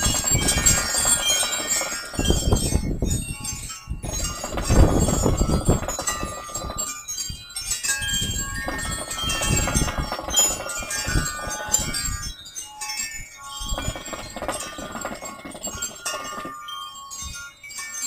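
Hookah water bubbling in several long stretches as the hose is drawn on, with short pauses between draws. High chime-like ringing tones sound throughout.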